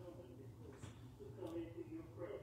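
Faint voices singing a slow unaccompanied hymn, with long held notes, in a small room.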